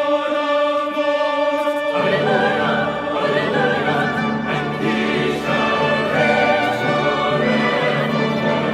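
Church choir singing in parts: a held chord for about two seconds, then fuller singing with lower notes added.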